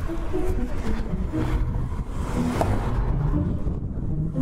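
City street traffic: cars driving by with a steady low rumble.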